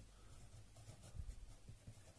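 Faint scratching of a ballpoint pen writing on notebook paper, a few soft strokes with the most audible a little after a second in.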